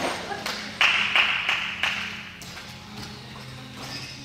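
Jump rope slapping the beam or mat: a run of sharp taps, about three a second, for about a second and a half, over a steady low hum.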